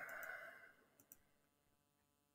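Near silence with faint clicks: a pair right at the start and another pair about a second in.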